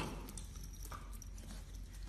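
Golden retriever puppy's claws and paws tapping on a tile floor as it bounces and pounces at a ball: a scatter of light, irregular clicks.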